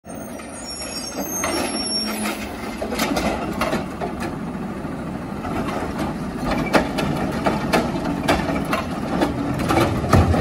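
Heil Rapid Rail automated side-loader garbage truck running as it pulls up to the curb. Its hydraulic arm lifts a trash cart and dumps it into the hopper, with several sharp knocks of the cart and arm in the second half.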